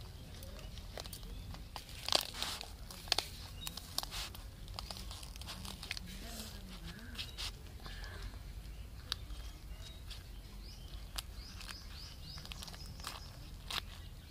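Rustling and crinkling of a large taro leaf coated in gram-flour paste as it is folded and rolled up by hand on a woven bamboo tray, with scattered small crackles and taps, two sharper ones about two and three seconds in.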